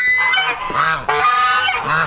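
Several domestic geese honking loudly and repeatedly, their calls overlapping.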